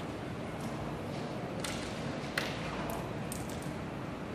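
Steady hiss and hum of a large hall's room noise, with a handful of sharp, short clicks in the second half.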